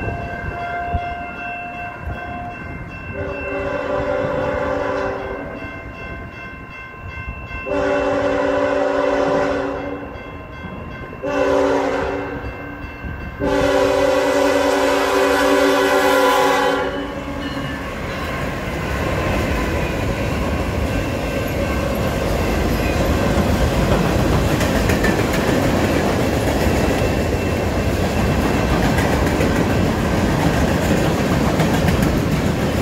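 Diesel freight locomotive horn sounding the grade-crossing signal: two long blasts, a short one and a final long one. Then the locomotives pass and the freight cars roll by in a steady rumble with clickety-clack from the wheels.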